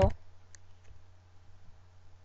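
Two faint clicks of a computer keyboard key being pressed, about half a second and just under a second in, over a steady low hum.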